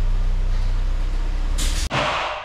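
Pneumatic impact wrench running steadily while tightening the subframe bolts, a low buzzing hum with fast pulsing. It cuts off abruptly near the end, with a short burst of air hiss.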